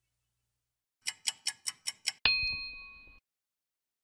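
Audio logo sound effect: six quick clock-like ticks, then a single bright bell ding that rings for about a second and cuts off.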